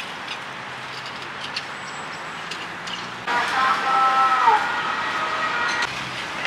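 Outdoor street ambience with a vehicle moving slowly over pavement. About three seconds in, a louder sound of several steady high tones joins in, with a brief downward slide in pitch, and stops just before the end.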